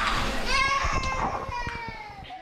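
Several voices at once, among them a high-pitched, drawn-out voice starting about half a second in, all fading out.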